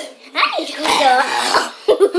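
A young person coughing and making wordless voice sounds while exercising, with a short sharp knock near the end.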